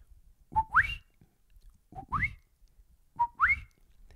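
A man whistling an imitation of the coqui frog's call, three times: each a short low note followed by a quick upward-gliding higher note, 'co-QUI'.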